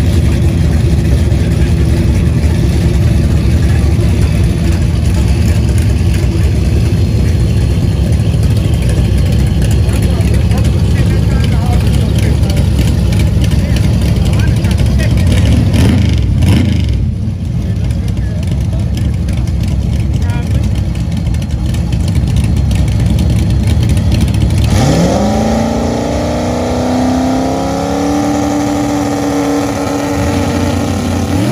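Turbocharged 4.6-litre two-valve V8 of a New Edge Mustang GT drag car running with a loud, steady, low rumble. About 25 seconds in, the engine revs up and is held at a steady higher pitch at the starting line before launch.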